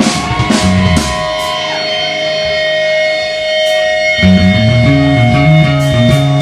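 Live pop-punk band playing amplified electric guitars, bass and drums. After a few drum hits, a single held note rings on its own for about three seconds, then the bass and guitars crash back in with a driving low riff about four seconds in.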